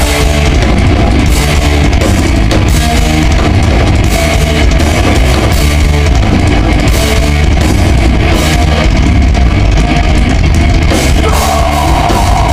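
Thrash metal band playing live: distorted electric guitars and bass over fast drumming on a full drum kit, loud and dense throughout.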